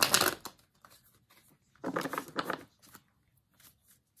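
Tarot deck being shuffled by hand: a loud papery rush of cards at the start, a second, softer burst of shuffling about two seconds in, and a few faint card clicks between.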